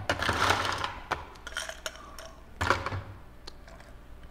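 Ice cubes scooped with a metal spoon from an ice bucket and clinking into a glass: a rattling scoop at first, then scattered clinks, with a stronger one past the middle.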